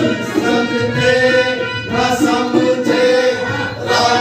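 Live song: voices singing with harmonium accompaniment.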